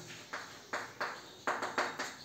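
A piece of chalk writing on a blackboard: about six short, sharp strokes and taps in two seconds.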